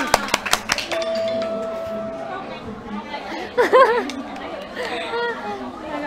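Excited chatter from several people right after a timed challenge ends, opening with a quick run of sharp clicks and a steady tone lasting about a second, then short bursts of speech.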